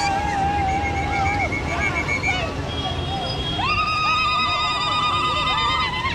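Women in a crowd ululating, long high wavering cries held for a second or two at a time, the loudest starting a little past halfway, over the low steady rumble of many motorcycle engines.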